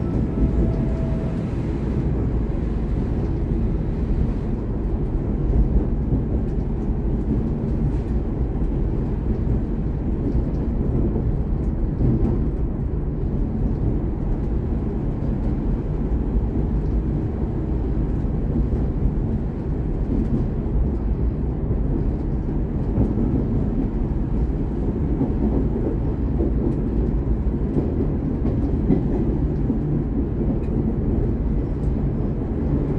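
VLocity diesel railcar running steadily through a tunnel, a continuous low rumble with no let-up.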